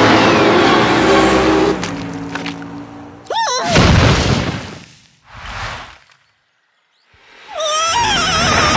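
Cartoon lightning-strike sound effect: a sudden wavering electric zap and a loud crash about three seconds in, then a shorter second burst. Cartoon score plays before it and fades out.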